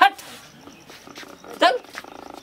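A dog barking twice: two short, sharp barks about a second and a half apart.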